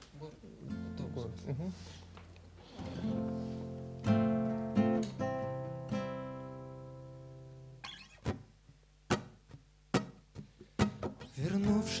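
Acoustic guitar playing a song's introduction: a few chords strummed and left to ring, fading slowly over several seconds, then a few sharp clicks before the strumming picks up again near the end.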